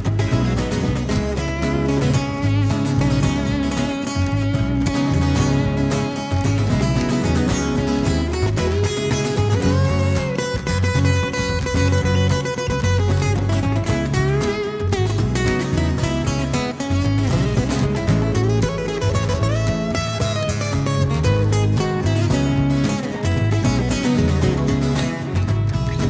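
Acoustic guitars playing an instrumental break: a lead guitar picks a melodic solo line with slides over steadily strummed rhythm guitars.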